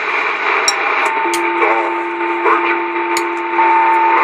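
Two-way radio channel hiss with a few sharp clicks, and a steady two-tone whistle that comes on about a second in and holds over the static.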